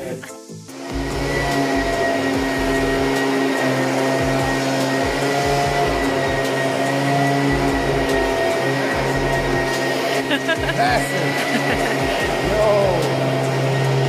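A motorised blower-type floor cleaner running steadily: a constant hum with a high whine above it, starting about a second in. A voice is briefly heard near the end.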